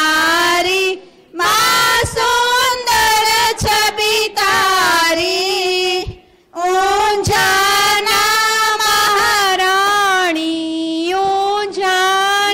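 A woman's high voice singing an aarti hymn in long held notes, breaking off briefly about a second in and again about six seconds in.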